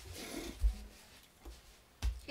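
Handling noise in a quiet small room: a brief rustle, then a soft low thump under a second in and a fainter thump about a second later.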